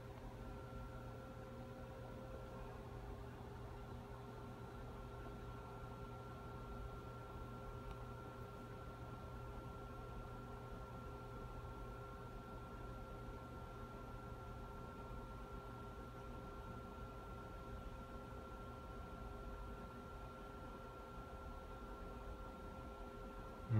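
Quiet, steady room tone: a low hum and hiss with a few faint steady higher tones, unchanging throughout.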